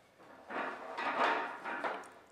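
Wooden parts of a cedar and hardwood folding leisure chair creaking and rubbing against each other as it shifts under handling. The sound is a rough, noisy one lasting about a second and a half, starting about half a second in.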